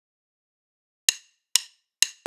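Two sharp, ringing wooden clicks about half a second apart after a second of dead silence: a drumstick count-in leading straight into drum-kit music.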